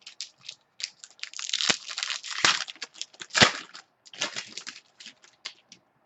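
Wrapper of a baseball card pack being torn open and crinkled by hand: a run of sharp crackling rustles, densest in the middle and loudest about three and a half seconds in.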